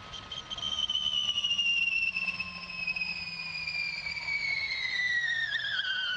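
Electric motor whine of a Gen3 Formula E car with a Mahindra powertrain, heard onboard, falling steadily in pitch as the car slows, and dropping more quickly near the end.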